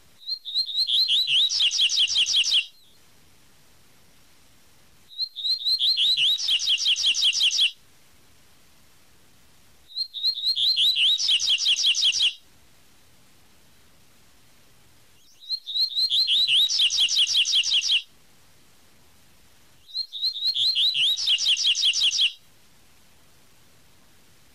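Double-collared seedeater (coleiro) singing its 'tui tui' song: five phrases, each a fast run of repeated high notes lasting about two and a half seconds, with pauses of two to three seconds between them.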